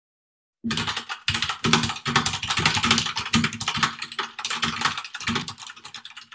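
Fast computer keyboard typing, a quick run of key clicks that starts about half a second in and thins out near the end. It is a typing sound effect matched to on-screen text being typed out.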